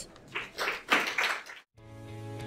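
Brief audience applause at the end of a talk, cut off abruptly near the end, followed at once by music beginning with steady held notes.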